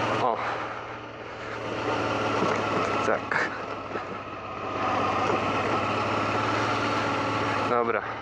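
Honda XL650V Transalp's 647 cc V-twin running under way on a gravel track, with wind and tyre noise over it. The engine note gets louder and softer a few times as the throttle is opened and eased.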